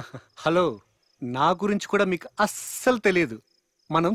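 Film dialogue: a man speaking, with faint cricket chirping heard in the pauses between his phrases.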